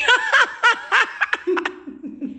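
A woman laughing in a WhatsApp voice note: a quick run of short snickering pulses, about four a second, that gives way to a lower, drawn-out note near the end.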